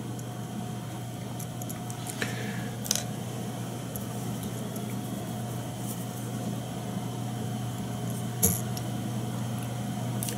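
A steady low electrical hum, with a few faint clicks of small tools and materials being handled at a fly-tying vise: one about two seconds in, one near three seconds and one about eight and a half seconds in.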